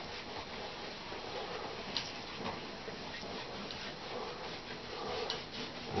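Faint brushing of a paintbrush on canvas, with a few light ticks about two seconds in and again near the end, over a low steady hiss.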